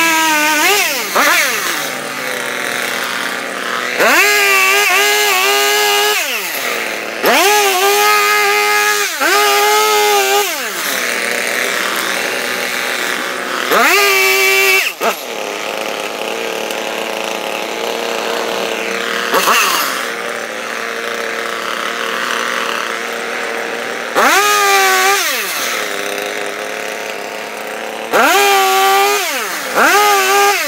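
ECHO CS-3510 gas chainsaw with its two-stroke engine revving to full throttle in about five bursts of one to three seconds as it cuts through logs, the pitch climbing into each cut and falling away after it. It drops back to a lower running speed between cuts.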